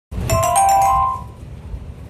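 A short electronic chime of a few bell-like notes, starting just after the beginning and fading out by about a second and a half in, followed by low handling rumble.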